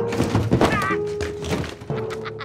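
A comic crash: a quick run of clattering thuds over background music with a held note.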